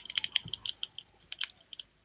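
Crackling of a fire in a hearth: a run of light, irregular snaps and pops, several a second.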